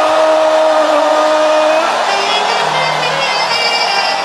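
A long held musical note stops about two seconds in, and a live band with brass horns strikes up a lively tune.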